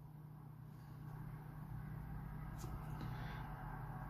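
Quiet room tone: a low steady hum with a faint tick about two and a half seconds in.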